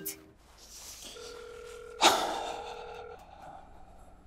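Telephone ringback tone: a steady electronic tone at two pitches, held for about two seconds as a call rings unanswered. About halfway through, a sudden loud hit cuts in and fades away over about a second.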